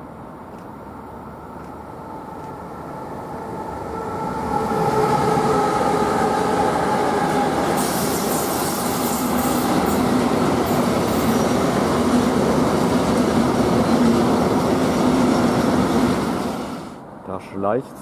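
TX Logistik Siemens Vectron (class 193) electric locomotive hauling an intermodal freight train passes close by. The sound grows as it approaches, with the locomotive's whine sliding down in pitch as it goes past about five seconds in. A long, loud run of wagons follows, with a steady hum and some high squeal from the wheels in the middle, and it falls away near the end.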